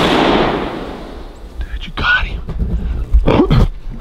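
The report of a scoped hunting rifle fired at a deer, its echo rolling away through the woods and fading over about a second. Knocks of handling follow, with two short exclaimed sounds from the shooter.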